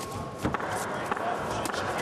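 Boxing arena ambience: a steady crowd din, with a few sharp thuds from punches landing as one boxer works the other on the ropes, the clearest about half a second in.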